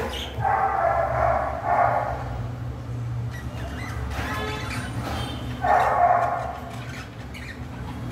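Caged budgerigars chirping over a low steady hum, with two louder bouts of animal calls, about half a second in and again just before six seconds.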